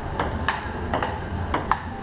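Table tennis rally: the ball clicking sharply back and forth off the bats and the Kettler outdoor table, a quick irregular series of clicks.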